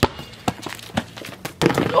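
Rubber playground ball bouncing on an asphalt driveway, four sharp bounces about half a second apart, then a louder stretch of scuffling and a shout near the end as the shot goes up.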